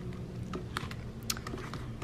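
A few faint, scattered clicks and taps as hands handle and turn the pages of a clear vinyl cash-envelope binder.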